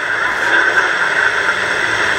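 Steady AM radio static and hiss from a Top House GH-413MUC portable radio's speaker, with no voice coming through.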